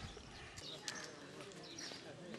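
Faint outdoor ambience with a few short, high chirps of small birds.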